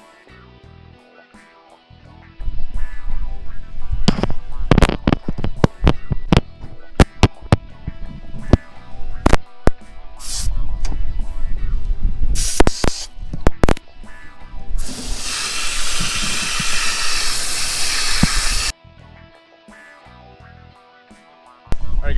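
Hose spraying hot water onto a skid steer's radiator. A couple of seconds in come a run of sharp bursts and splashes, then a steady hiss of spray for about four seconds that cuts off suddenly, all over background music.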